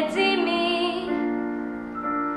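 A teenage girl singing a Slovak song, holding a note with vibrato that ends about a second in, over instrumental accompaniment that carries on with steady held chords.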